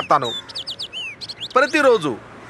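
Small birds chirping: a quick series of short, high, falling chirps lasting about a second, between bits of a man's speech.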